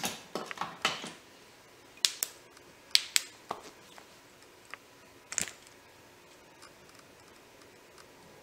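Irregular sharp clicks and light taps from handling a small flashlight and a glass shot glass on a tabletop, about a dozen over five seconds, the loudest about five seconds in.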